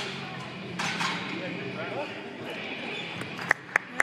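Low murmur of people's voices and room noise echoing in a gymnasium. Near the end come two sharp hand claps, a quarter second apart, the start of steady clapping.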